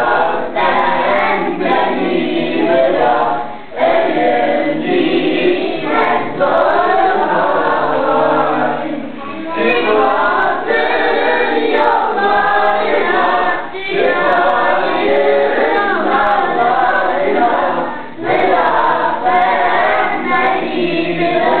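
A group of children singing together without accompaniment, in sung phrases with brief pauses between lines.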